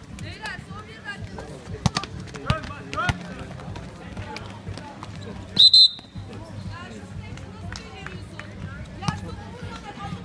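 A basketball bouncing on the court, three evenly spaced bounces about two seconds in and another near the end. A little past the middle comes a referee's whistle, two short shrill blasts, the loudest sound.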